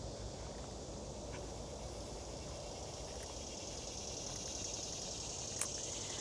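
Faint, steady chorus of insects chirring in the trees, with a low rumble underneath and a single faint click near the end.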